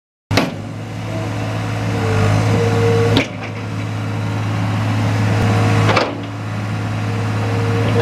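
John Deere 250 skid steer loader's diesel engine running steadily with a strong low hum as the machine drives and begins lifting its bucket, its level building gradually. Sharp knocks about three and six seconds in, each followed by a brief dip in level.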